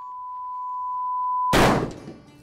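A steady high-pitched electronic tone swells in loudness, then is cut off about one and a half seconds in by a single loud rifle shot that dies away quickly.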